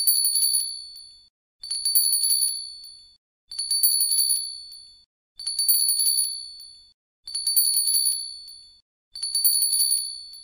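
A bright metallic bell ring with a fast rattling trill, repeated about every two seconds, each ring dying away over about a second.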